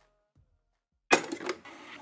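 About a second of silence, then a sudden clatter of sharp mechanical clicks over hiss, three quick clicks in half a second, settling into a low steady hiss: the clicking sound-effect intro of the next song.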